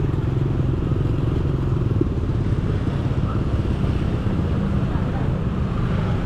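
A motorbike engine running steadily at low riding speed, heard from the rider's seat among other motorbikes in traffic.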